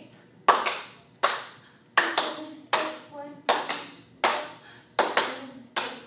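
Hands clapping to a steady beat, about one clap every three-quarters of a second, with a quick double clap twice.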